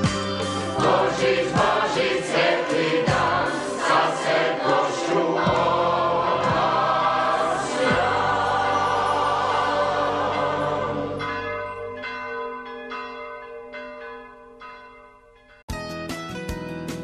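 Choir singing a religious song over music, fading out from about eleven seconds in to a few ringing chime notes that die away; near the end it cuts abruptly to strummed acoustic guitar.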